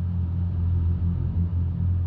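A low, steady rumbling drone.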